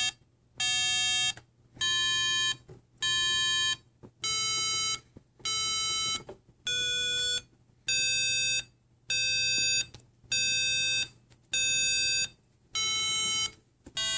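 Small loudspeaker on a PIC18F4620 microcontroller scale playing a run of buzzy beeps, a little under one a second, each lasting most of a second. The pitch steps up and down between beeps as the weight pressed on the pressure sensor changes, because each pound of weight has its own tone.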